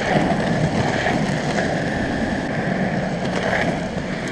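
Skateboard wheels rolling steadily over asphalt, giving an even, continuous rolling noise.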